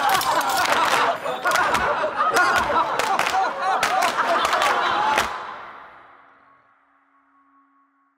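Layered pop vocal harmonies with sharp handclap-like hits, building up, then stopping suddenly about five seconds in and ringing away in an echo to near silence.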